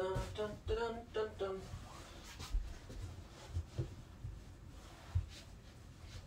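A man's voice briefly in the first second and a half, then handling sounds as the padded lid of a fabric folding storage ottoman crammed with pillows is pressed down onto it: faint rustling and a few dull thumps.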